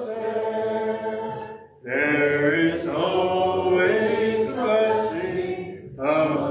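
Congregation singing a hymn a cappella, unaccompanied voices led by a man, with a short pause for breath a little under two seconds in before the next phrase.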